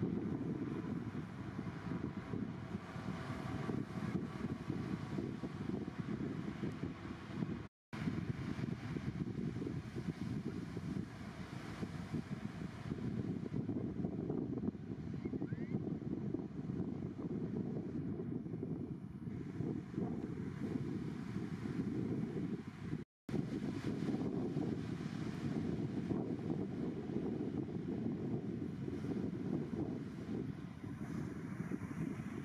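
Wind buffeting the camera microphone over the low rumble of surf breaking on the beach, a steady noise broken by two brief drop-outs to silence about eight and twenty-three seconds in.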